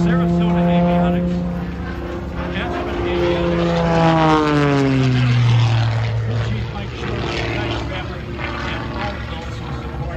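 Propeller-driven aerobatic airplane flying past overhead: a steady engine drone that drops sharply in pitch about four to five seconds in as the plane goes by, then fades.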